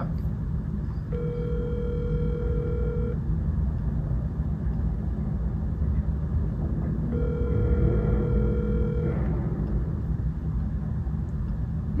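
Smartphone ringback tone of an outgoing call not yet answered: two steady rings, each about two seconds long, about four seconds apart, the North American ringing cadence, over a low steady room hum.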